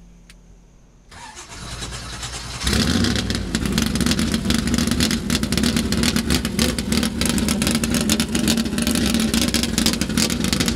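The V8 engine of a 1957 Chevrolet Corvette Super Stock drag car is cranked on the starter from about a second in. It catches a little under three seconds in and runs loudly and steadily.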